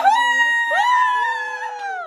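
Women's long, high-pitched squeals of excitement without words, one starting right away and a second joining under a second in, both held and then sliding down in pitch.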